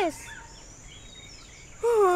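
Quiet outdoor ambience with a faint bird chirp or two. Near the end a child's voice begins a drawn-out call.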